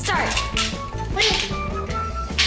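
Plastic game chips clattering as they are dropped into a plastic four-in-a-row grid, over steady background music, with a short call from a voice right at the start.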